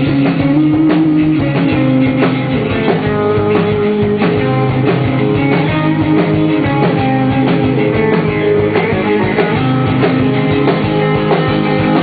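A live rock band playing loudly: electric guitar over bass and a drum kit keeping a steady beat.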